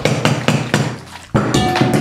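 Rapid, irregular banging of a plastic sippy cup struck again and again on a wooden tabletop, with a short steady tone sounding near the end.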